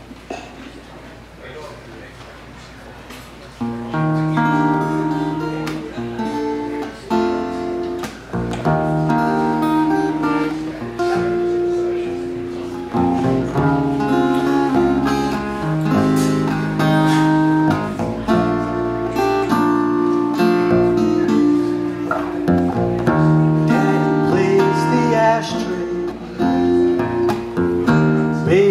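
Acoustic guitar and acoustic bass guitar playing the instrumental intro of a song, coming in about four seconds in after a few quieter seconds.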